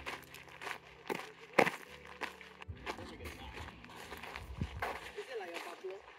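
Footsteps on a dirt walking track, irregular, with one sharp knock about one and a half seconds in, over a faint low hum.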